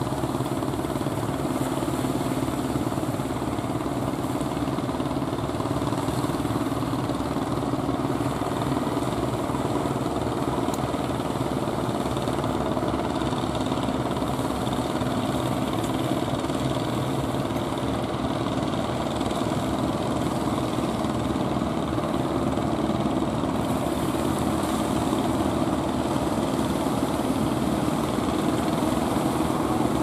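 Engines of several wooden fishing boats running steadily under power as the boats drive in through the surf, over the rush of breaking water.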